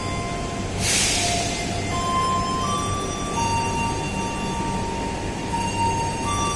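Standing passenger train at a station platform: a steady low hum from the idling train, with a short burst of air hiss about a second in.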